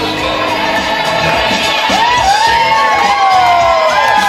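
A crowd cheering and whooping over music, with a burst of high, overlapping whoops and shrieks from about halfway in.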